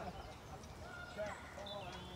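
Faint, indistinct voices of people talking in the background.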